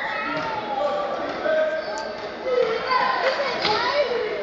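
Spectators talking among themselves in a gymnasium, with a basketball being dribbled on the hardwood court during play.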